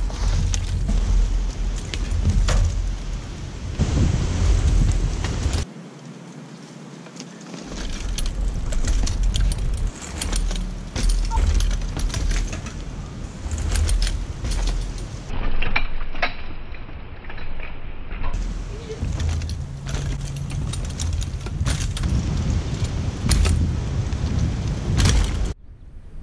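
Bicycle ridden over a dirt trail, recorded on a camera riding along with it: a heavy wind rumble on the microphone with the rattle and clatter of the bike over bumps. The sound cuts abruptly a few times between takes.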